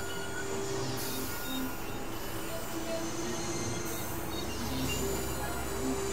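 Experimental synthesizer drone music from a Novation Supernova II and Korg microKORG XL: layered sustained tones over a low hum, with a high hiss that drops out briefly and returns about every three seconds.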